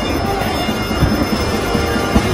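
Loud, chaotic din of teenagers screaming and shouting in panic, with scuffling knocks and music underneath.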